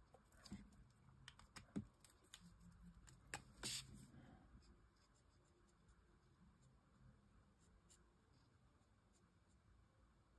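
Near silence, with faint strokes and a few light clicks from a felt-tip alcohol marker (Promarker) working on cardstock in the first few seconds, then quieter still.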